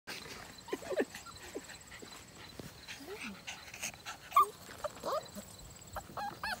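Nine-week-old beagle puppies making short, high whines and yelps in excitement while mouthing a hand, one louder yelp about four seconds in.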